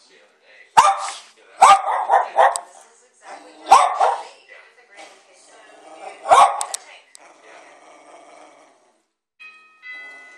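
Dogs playing roughly with each other, one giving sharp play barks: about six barks, three in quick succession a couple of seconds in, then one single bark around four seconds in and another around six seconds in.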